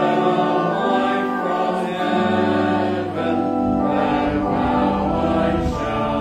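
Congregation singing a hymn with accompaniment, the chords held and changing about once a second.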